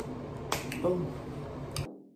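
Finger snapping: two sharp snaps about a fifth of a second apart about half a second in, a short vocal sound just after, and another snap near the end, over room hiss. The sound cuts off suddenly just before the end.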